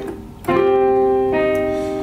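Digital keyboard with a piano voice playing a right-hand phrase: a chord struck about half a second in and held, then another note tapped about a second later. This is the C-and-F chord with its grace note to G, followed by the tapped E flat.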